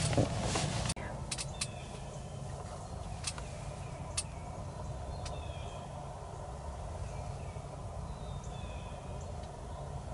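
Laughter in the first second, then outdoor ambience: a steady low rumble, faint short bird chirps and a few sharp rustles in dry leaves.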